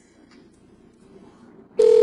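A short electronic beep: one steady, loud tone lasting about half a second near the end, after a quiet stretch of room tone.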